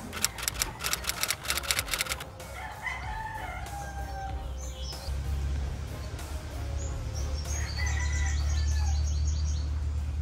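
A rooster crowing a few seconds in, after a rapid clattering burst in the first two seconds. Background music with a deep bass comes in about halfway, and quick high chirps repeat near the end.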